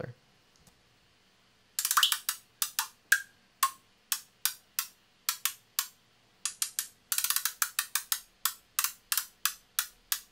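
Synthesized trap closed hi-hats (Ableton Operator white noise over a high-pitched FM tone) playing a sparse pattern with quick rolls, starting about two seconds in. Each hit sounds slightly different because automation is sweeping a frequency shifter, giving the hats a metallic, shifting quality.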